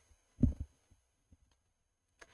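A single dull click-thump about half a second in, from the computer input that runs a line of code, followed by a few faint ticks.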